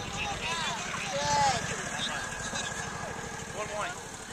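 Distant voices of players and spectators calling out across an open soccer field, in short rising-and-falling shouts, over a steady low rumble.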